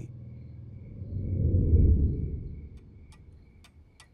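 A low rumbling swell rises and fades in the middle, then a clock starts ticking near the end, about two ticks a second.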